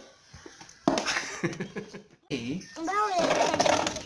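A young child's wordless vocalizing, a high sing-song voice sliding up and down in pitch, in the second half. Before it comes a stretch of indistinct rustling noise and a brief drop-out in the sound.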